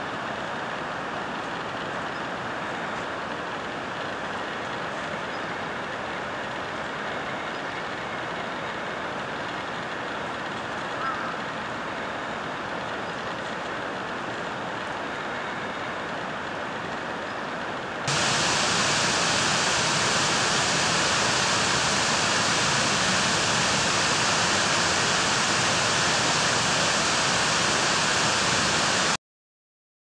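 A steady rushing noise with no distinct events, stepping up louder about two-thirds of the way through and then cutting off abruptly near the end.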